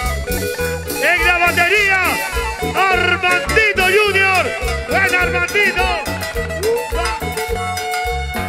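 Latin cumbia band playing an instrumental passage: a steady bass and percussion rhythm under a lead melody of swooping, bending notes.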